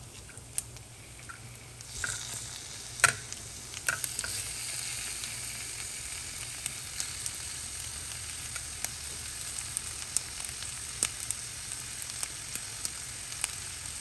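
Thin slices of fatty beef sizzling in a little oil in an iron pan as they are laid in, with scattered crackles. The sizzle starts about two seconds in and holds steady, with a sharp click soon after.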